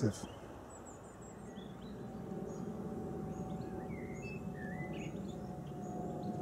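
Small birds chirping faintly in short, scattered calls over a steady low outdoor background noise that grows a little louder about two seconds in.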